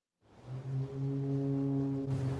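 A ship's horn sounding one low, steady note. It begins after a brief silence about a quarter of a second in.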